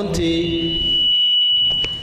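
A steady high-pitched whistle from the hall's public-address system, sounding as acoustic feedback from the handheld microphone. It holds one pitch for nearly two seconds and cuts off suddenly near the end.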